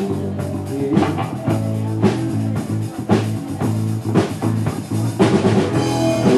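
Live rock band playing an instrumental stretch: a drum kit keeps a steady beat of about two hits a second under sustained electric guitar notes.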